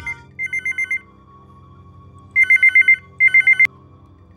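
Desk telephone's electronic ringer trilling in fast pulses: one ring, a pause, then a double ring. The double ring is cut off with a click as the handset is lifted near the end.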